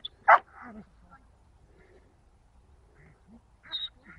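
A dog gives one loud, short bark about a third of a second in, with a softer short dog call near the end.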